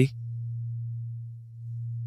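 A steady low pure tone, a background drone laid under the lessons. It dips in loudness about one and a half seconds in, then swells back.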